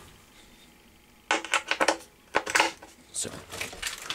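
Headphone plug scraping against and clicking into the headphone jack of a homemade amplifier: a cluster of small clicks and rattles a little over a second in, then a shorter clatter about a second later.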